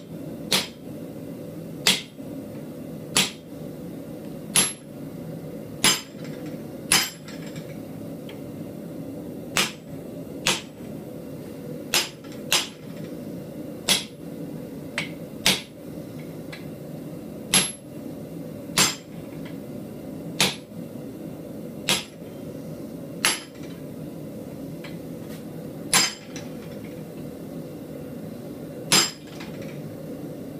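Hand hammer striking a chisel held against red-hot steel to cut a line: single sharp, ringing blows about every one to two seconds, with a few longer pauses. A steady low hum runs underneath.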